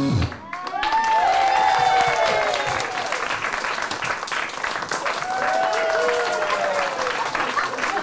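Music cuts off just after the start, then a small audience applauds steadily, with voices whooping in cheers about a second in and again around five seconds in.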